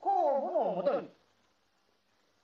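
A man's voice in an old archival recording of a Japanese wartime radio speech, speaking Japanese with a strongly rising and falling pitch for about a second, then breaking off into a pause.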